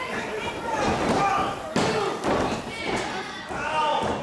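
Spectators shouting and calling out, with one sharp thud a little under two seconds in from a body or foot hitting the wrestling ring's mat.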